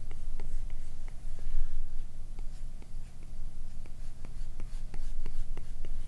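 Apple Pencil tip tapping and stroking across an iPad's glass screen during quick sketch strokes: irregular light ticks, several a second, over a steady low hum.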